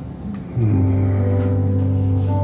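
A deep, sustained keyboard pad chord comes in suddenly about half a second in and is held steady, much louder than the soft music before it.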